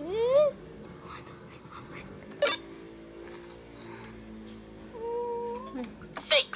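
Toy laptop's electronic sound effects as keys are pressed: a wavering, rising synthetic tone in the first half-second, a sharp click about two and a half seconds in, and a steady beep near the end that drops in pitch as it stops.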